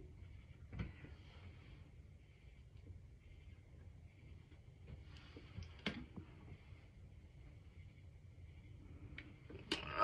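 Near silence: quiet room tone with a faint low hum and three faint clicks spread through it.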